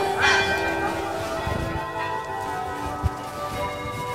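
Bells ringing in long, overlapping tones. The loudest strike comes about a quarter second in, and a short low thump sounds about three seconds in.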